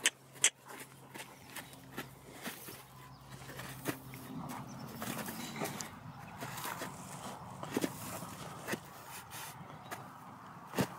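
A horse's hooves stepping in sand footing, with scattered short taps as she moves on a rope looped around a hind leg; the two loudest taps come half a second apart right at the start.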